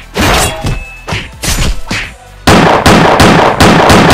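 Fight sound effects over music: a quick series of hits and thuds, then about halfway a sudden loud sustained rush of noise with more impacts in it, like a blast.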